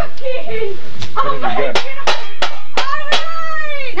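People's voices talking and exclaiming, with a quick run of about five sharp clicks in the second half, roughly three a second.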